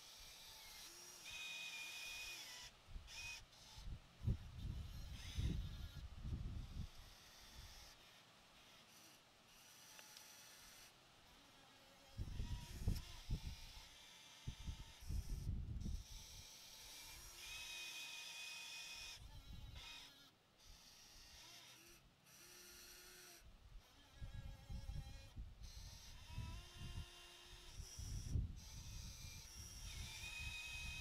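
Small electric gear motors of a toy-scale RC excavator whining in short spells of a second or two, several times over, as the arm and bucket move. Bursts of low rumble come in between.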